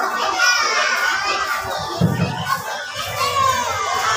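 Children's high voices chattering and calling out over each other, with other voices in the room.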